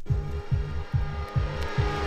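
Electronic dance music from a DJ mix: a steady four-on-the-floor kick drum at about two and a half beats a second, with a swelling wash of noise building over it that cuts off suddenly at the end, a riser leading into the next section.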